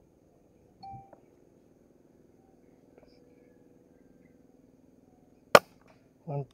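A Sharp Ace air rifle firing: a single sharp shot about five and a half seconds in, after near-quiet with a faint steady hum.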